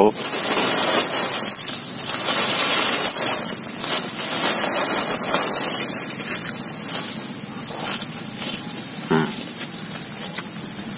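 Loud, steady chorus of crickets: a continuous high-pitched drone on two unchanging pitches over a hiss.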